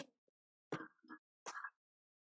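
A man's voice making a few short, faint, indistinct sounds, each well under half a second, with dead silence between them.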